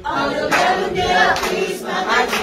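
A group of children singing together.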